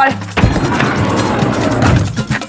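A van's sliding side door opens with a sudden clunk about half a second in, then a sliding noise as it rolls back for about a second and a half, over background music with a Latin beat.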